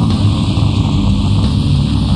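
Blackened death metal from a 1997 promo cassette: heavily distorted guitars and drums in a dense, unbroken wall of sound, with a steady hiss over the top.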